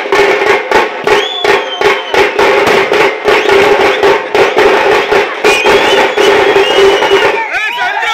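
Tamte frame drums beaten with sticks in a fast, driving rhythm, with a crowd cheering and yelling over them; the yells crowd in near the end.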